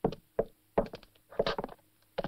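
Boots stepping on wooden floorboards: a few short knocking footsteps at an uneven pace.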